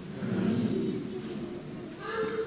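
A congregation praying aloud all at once: many voices overlapping into an indistinct jumble, with no single voice standing out.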